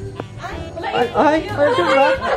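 A group of people talking and exclaiming over one another, getting louder about half a second in, over background music with a steady bass line.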